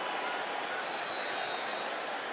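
Steady stadium crowd noise carried under a live radio football broadcast, with a faint thin high tone for about a second in the middle.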